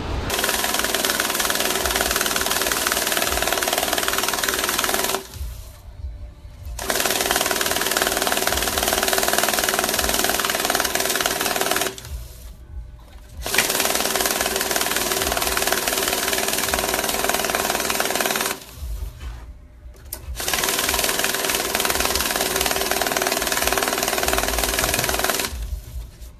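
Electronic banknote counting machine riffling through stacks of bills, in runs of about five seconds with short breaks between them while the next stack is loaded.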